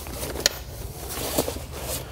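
Layout blind's fabric cover rustling as it is handled along its metal door-frame tube, with a sharp click about half a second in and another near a second and a half.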